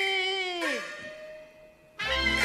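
A long held note in Cantonese opera singing slides sharply down in pitch and breaks off about two-thirds of a second in. A single ringing tone is left behind and fades almost to nothing.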